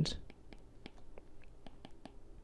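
Faint, irregular ticks of a stylus tapping and sliding on a tablet's glass screen while handwriting, several small clicks a second.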